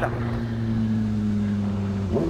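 Honda Hornet motorcycle engine running at a steady, even speed as the bike cruises.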